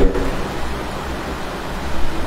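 A steady, fairly loud hiss with a low hum beneath it, and no speech.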